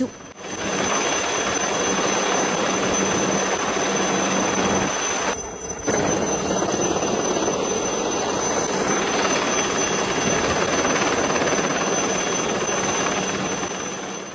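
HAL Chetak helicopter in flight: a steady rush of turboshaft engine and rotor noise, dropping out briefly about five seconds in and then carrying on.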